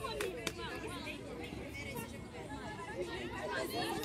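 Indistinct, overlapping voices of players and spectators calling and chattering across an outdoor rugby pitch, with two brief clicks near the start.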